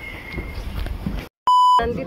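Faint outdoor background with a low rumble, then an abrupt dropout to silence and a short, loud electronic beep: one steady pure tone lasting about a third of a second. It is a beep sound effect laid in at an edit.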